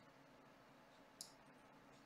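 Near silence, broken about a second in by a single short, sharp click of a computer mouse button.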